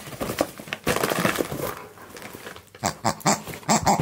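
A husky-malamute rummaging with his nose in a cardboard parcel: breathy, noisy sounds in the first half, then a run of crinkles and clicks from paper and cardboard being pushed about.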